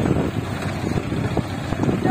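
Diesel engine of a front-end loader tractor running in a steady low rumble as the tractor works.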